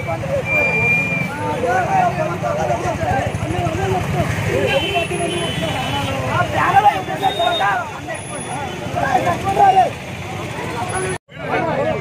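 Several men shouting and arguing at once over the low, steady running of a truck engine and street traffic. The sound drops out for a moment near the end.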